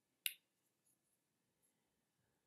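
Near silence with one short, sharp click about a quarter second in, followed by a few faint ticks.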